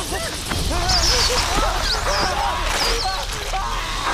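A swarm of rats squealing and squeaking: many short, overlapping squeals that rise and fall in pitch, with shriller squeaks above them, over a low rumble.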